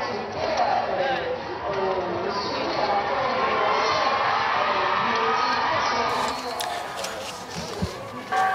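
A crowd of many voices calling out and cheering at once, overlapping into a continuous din that eases slightly near the end.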